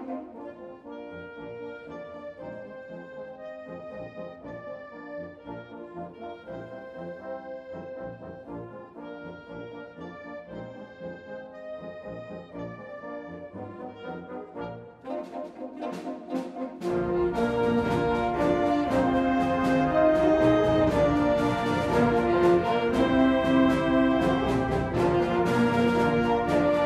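Concert wind band playing an overture: a softer melodic passage of held notes, then a few sharp percussion strikes and, about two-thirds of the way in, the full band coming in much louder with brass and low percussion.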